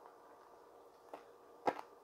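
A mouthful of rice being chewed with closed lips: mostly quiet, with a few short mouth clicks, the loudest about three-quarters of the way through.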